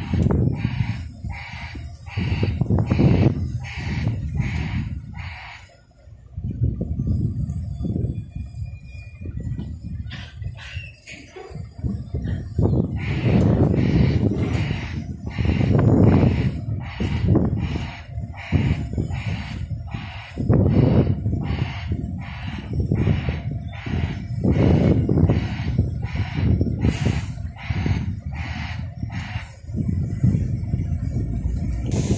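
Wind buffeting the microphone in gusts that swell and fade every few seconds. Over it runs a short high chirp repeated about twice a second, pausing for a few seconds in the middle.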